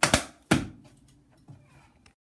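A few sharp taps of wooden drumsticks: two quick hits at the start, another about half a second in, and a faint one about a second and a half in.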